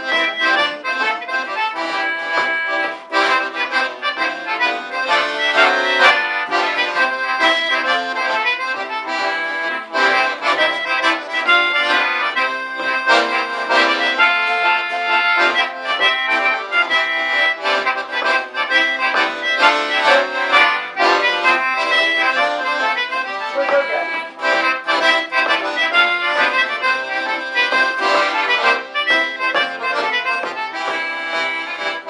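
Accordion playing a traditional folk tune, with acoustic guitar accompaniment.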